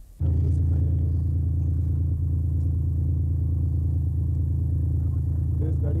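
A motor vehicle's engine running steadily, a loud low drone that cuts in abruptly just after the start.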